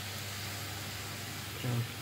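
Potato sticks frying in vegetable oil in a pan, giving a steady, even sizzle.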